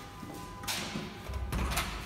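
A steel door's lever handle and latch being worked: a few sharp clicks and thumps, over a faint steady hum.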